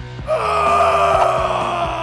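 A dubbed creature roar or wail sound effect: one long, pitched cry that falls slightly, starting about a third of a second in, over background music with a steady beat.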